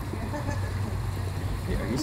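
Steady low outdoor rumble with faint voices murmuring over it.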